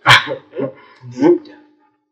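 Three short bursts of a man's voice, about half a second apart, with no full words.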